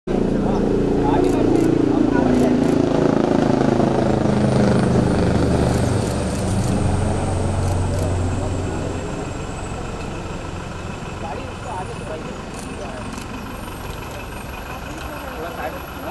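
A motor vehicle's engine running close by, loud at first and fading away over the first nine seconds or so, under the murmur of a crowd's voices.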